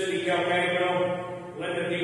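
A man's voice intoning on held, steady notes, chanting rather than speaking, in two long phrases, the second starting near the end.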